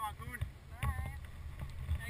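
Wind rumbling on an outdoor action-camera microphone, with brief faint voices and a few clicks of handling.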